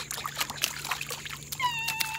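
Feet kicking in pool water, a quick run of small splashes. About a second and a half in, a high, held, slightly falling tone begins.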